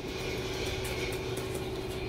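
Recorded restaurant ambience played over the room's speakers: a steady background hubbub with faint clicks and a thin steady hum running under it.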